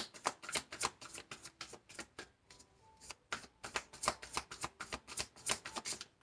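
A deck of tarot cards being shuffled by hand: a quick, quiet run of card flicks and taps that pauses for about a second a little before the middle, then carries on.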